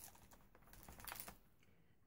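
Faint light clicks and rustles as small packaged craft items and a sheet of paper embellishments are handled.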